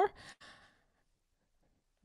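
A short, faint breathy exhale like a sigh from the woman at the microphone, fading out within about half a second, then silence.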